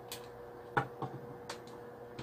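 A few light clicks and taps from handling a mini hot glue gun against a plastic saucer base, about five scattered ticks over a faint steady hum.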